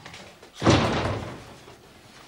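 A wooden door with glass panes slams shut once, a little over half a second in, the bang fading over about a second.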